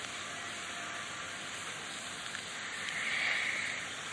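Steady background hiss of the lecture recording in a pause between sentences, swelling softly in the upper range for the last second or so.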